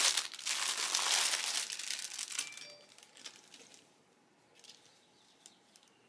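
A clear plastic bag crinkles loudly as a folded towel is pulled out of it. The rustling dies away about two and a half seconds in, leaving only a few faint taps.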